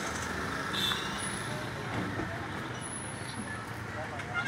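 Motor vehicle traffic noise: engines running steadily with road noise, with no single event standing out.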